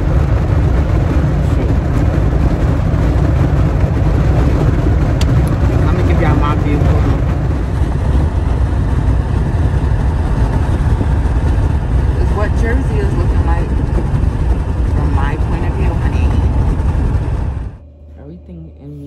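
Road noise inside a moving car's cabin at highway speed: a steady low rumble that cuts off abruptly near the end.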